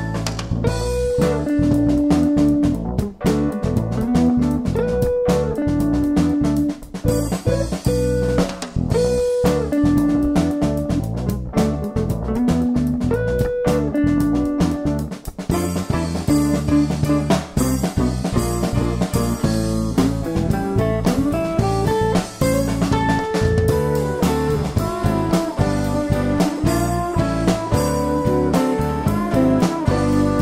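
Background instrumental music led by guitar, with a steady melody running throughout.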